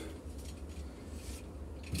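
Faint rubbing and handling of a compression fitting, its olive and nut being worked by hand onto gas pipe, over a steady low hum.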